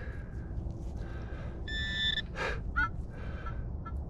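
A metal detecting pinpointer gives a short buzzing tone about halfway through as the probe closes on the target in the soil. Bird calls sound faintly afterwards.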